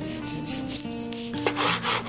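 Chef's knife sawing through a seared steak onto a plastic cutting board: two scraping strokes, the second longer, near the middle and end. Soft background music underneath.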